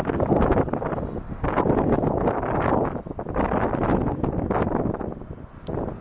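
Wind buffeting the microphone in uneven gusts, easing off near the end.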